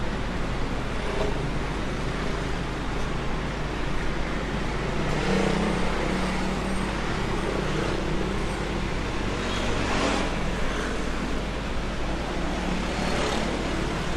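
Steady city street traffic noise from vehicles on the road beside the sidewalk, with louder swells as vehicles pass about five, ten and thirteen seconds in.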